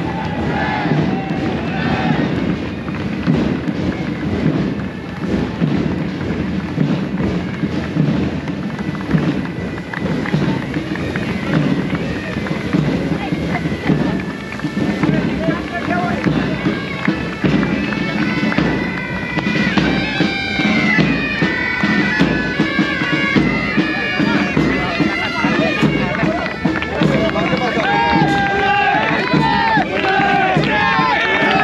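Bagpipes playing a tune over a steady drone, as from a uniformed pipe band, with crowd voices mixed in.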